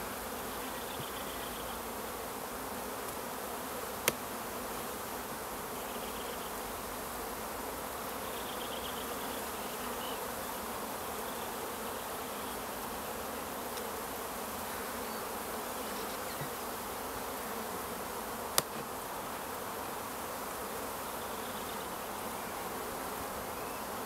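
Honeybees from a strong, opened hive buzzing steadily as frames covered in bees are lifted out for inspection. Two sharp clicks cut through the buzz, one about four seconds in and one about two-thirds of the way through.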